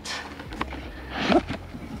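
Faint handling sounds, a light click and some brief rustling, over a low steady rumble, with a short murmur a little past the middle.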